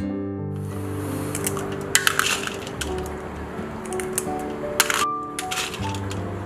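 Background music with several sharp, crisp cracks as kitchen scissors snip the tail tips off freshwater snail shells.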